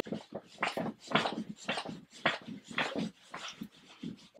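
A dog barking in a run of short barks, about two a second.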